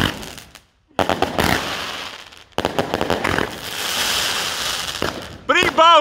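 Fireworks fountain hissing and crackling as it throws up sparks, starting abruptly twice, with a voice shouting near the end.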